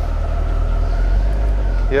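A 2003 Corvette 50th Anniversary Edition's LS1 V8 running low and steady at idle as the car creeps slowly forward.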